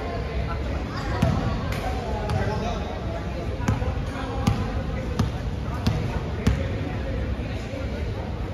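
A basketball bouncing on a hard court floor, about six single bounces at uneven gaps, over a background of players' chatter.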